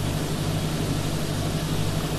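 Steady hiss with a low hum underneath: the background noise of the recording.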